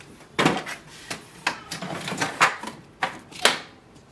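Sheets of printer paper being slid and tapped into the rear paper tray of an HP DeskJet 2752e printer: a run of about six short rustles and knocks over four seconds.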